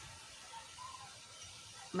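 Faint steady hiss from a glass-lidded pot of soup on a gas burner, just coming to a boil.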